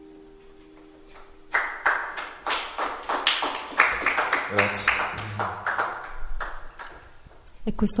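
The last chord of an acoustic guitar rings out and fades. About a second and a half in, a small audience starts clapping and keeps going for around six seconds.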